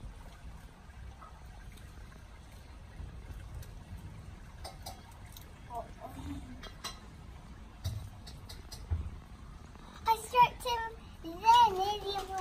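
A young girl's high voice in two short bursts near the end, with pitch gliding up and down and no clear words. Before that, only low background noise and a few faint clicks.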